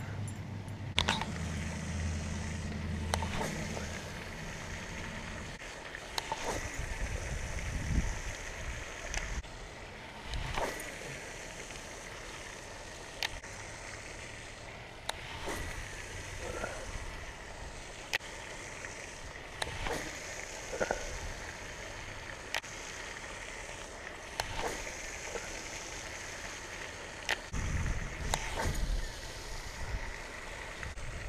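Steady outdoor background of water splashing from a pond fountain, with scattered clicks and knocks of handled fishing gear. A low steady hum runs for roughly the first five seconds.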